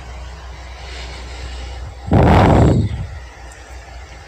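A short, loud burst of rumbling noise, under a second long, about two seconds in, over a faint low steady hum.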